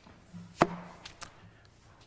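A single sharp knock, then a fainter tap about two-thirds of a second later, with a quiet "okay" spoken around the first knock.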